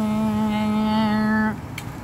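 A woman's voice holding one long, steady hummed note, a vocal imitation of a lawnmower's drone, cutting off about one and a half seconds in.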